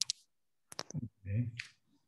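A sharp click, then a quick cluster of clicks just under a second later, with dead silence between them, followed by a short spoken "okay".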